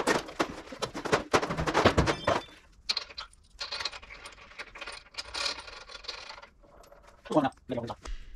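Metal clanking and clinking as a vintage Dodge Power Wagon's steel grille is picked up and fitted against its front mounts, with a dense rattle of small metal knocks in the first couple of seconds and lighter clatter after.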